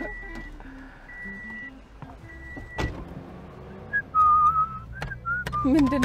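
Soft background music of short held notes, then, from about four seconds in, a person whistling: one long held note that wavers slightly, followed by a lower, steady note.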